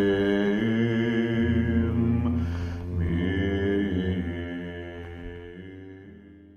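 Outro music: slow vocal chant over a held low drone, fading out through the second half.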